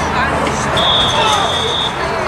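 A referee's whistle blown once, a single steady high tone held for about a second, starting near the middle, over voices of the crowd.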